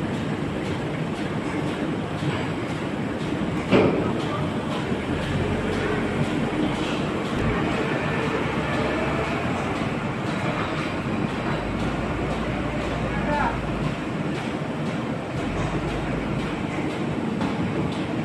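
CHM-1400 roll-to-sheet paper sheeter running in production, four reels of 65 gsm offset paper unwinding into the cutter, giving a steady, dense mechanical clatter. A single sharp knock comes about four seconds in.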